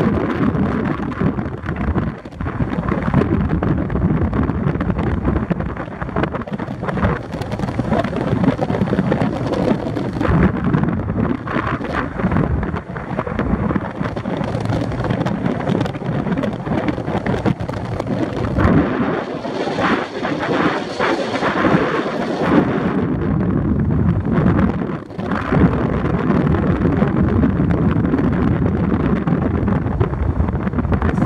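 Loud, gusting wind rumble on the microphone together with road noise, from riding in the open bed of a moving pickup truck.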